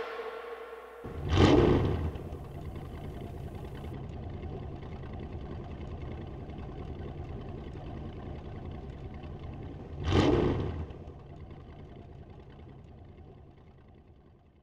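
Two short whooshing swells about nine seconds apart, over a steady low rumble that fades out near the end.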